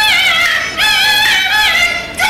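Beijing opera music: a high, wavering melody line with bending, ornamented notes, broken by a short pause about three-quarters of a second in.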